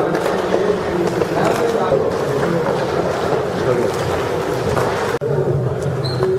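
Crowd of many people talking over one another in a jostling press scrum; the sound breaks off for an instant about five seconds in and then resumes.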